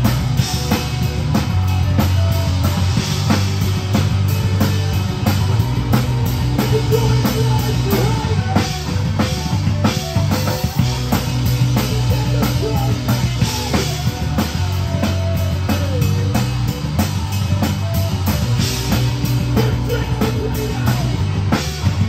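A rock band playing live at full volume: a drum kit played hard with constant cymbal and snare hits, over electric guitars and bass guitar. Heard from right beside the drum kit, so the drums are the loudest part of the mix.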